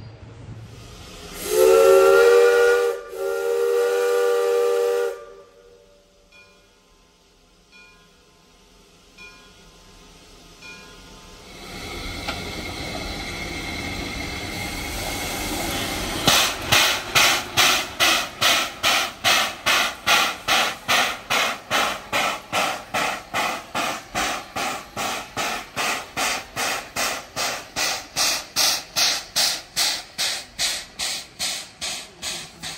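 Shay geared steam locomotive sounding two blasts of its chime steam whistle, then approaching and passing with a rising hiss of steam and rapid exhaust chuffs, about two to three a second, loud as it goes by.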